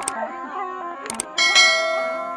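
A subscribe-button sound effect laid over tarpa music: sharp clicks at the start and just past a second in, then a bell ding about one and a half seconds in that rings on and fades. Underneath, the tarpa, a gourd wind instrument, plays a melody over a steady drone.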